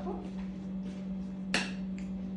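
A metal spoon clinks once, sharply, against a ceramic dinner plate about a second and a half in, over a steady low hum.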